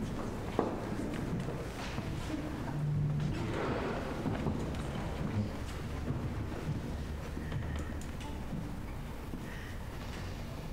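Room noise of a large hall full of people in a pause before a piece: low rustling and shuffling with scattered small knocks and clicks from the audience and the seated orchestra.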